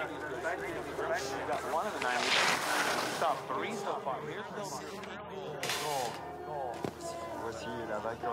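Broadcast commentary and voices over background music, with two short bursts of hiss, one a couple of seconds in and one near six seconds.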